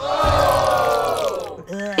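Several women's voices together in one long, drawn-out groan of disgust, sliding slowly down in pitch and fading out about one and a half seconds in.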